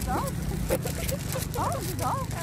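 Repeated short animal calls, each quickly rising or falling in pitch, several a second, over a steady low rumble.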